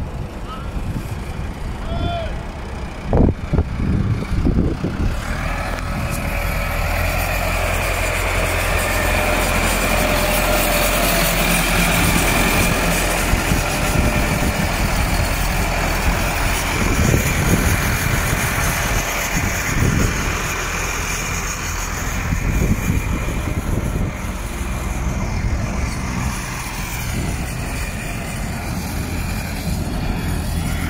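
Truck engine running steadily while a light truck is loaded onto a flatbed trailer, with a few sharp knocks about three to four seconds in. The sound grows louder and fuller about five seconds in.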